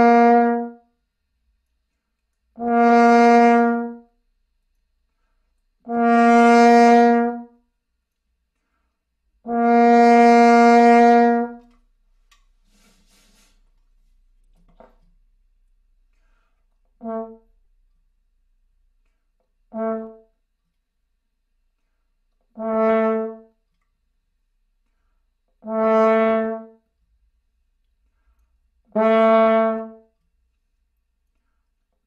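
French horn playing a series of separate notes on one pitch, started softly on the breath without tonguing, each note longer and louder than the last. After a pause of a few seconds, a new series starts about 17 seconds in with short, soft notes that again grow longer and louder.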